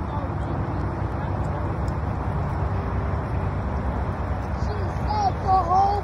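Canada geese calling: a few short, arched honks in quick succession near the end, over a steady low rumble.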